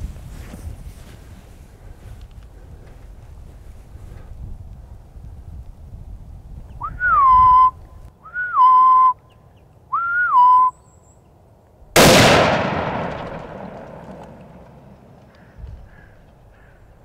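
Three short whistles about a second and a half apart, each rising then settling onto a steady pitch, then a single rifle shot whose report dies away over a few seconds.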